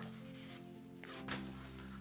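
Soft background music of slow, held chord notes that change twice, with a faint rustle of paper pages being turned.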